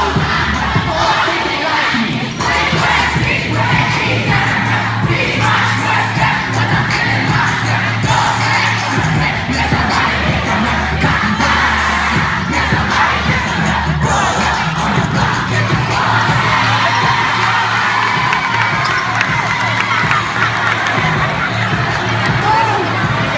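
A crowd of children cheering and shouting in a school gym, over dance music with a steady bass line played through a loudspeaker.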